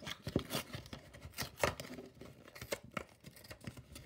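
Cardboard toy box being opened by hand and plastic packaging crinkling as a plastic ball is pulled out. The sound is irregular rustles, scrapes and clicks.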